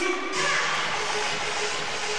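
Basketball arena ambience during a stoppage: steady crowd noise with music playing over the arena PA, growing louder about a third of a second in.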